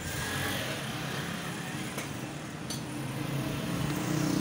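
Steady background noise with a few faint small clicks, two of them near the middle, as loose stripped wire ends are handled and untwisted.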